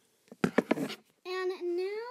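Handling noise as the recording tablet is picked up and moved: a quick cluster of knocks and rubbing, the loudest sounds here. Then a girl's voice holds a drawn-out, sung-like note that rises at the end.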